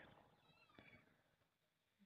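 Near silence: room tone in a pause between spoken sentences, with a faint, brief high-pitched call about half a second in.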